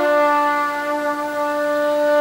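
Trumpet holding one long, steady note, settling onto it with a small drop in pitch just at the start.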